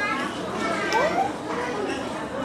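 Indistinct voices chattering in a room, with one voice rising in pitch about a second in.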